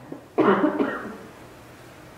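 A person coughing once, a sudden loud burst about half a second in that dies away within half a second.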